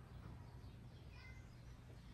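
Near silence: faint room tone with a steady low hum, and a few faint, short high chirps about a second in.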